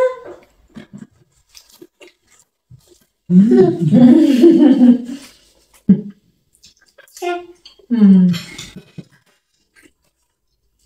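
A person's voice making wordless vocal sounds in several bursts: a long one a few seconds in, then shorter ones near the end.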